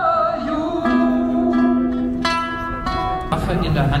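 Live music through a PA: a sung note with vibrato fades out, then a few plucked string notes start sharply one after another and ring on. A man starts speaking near the end.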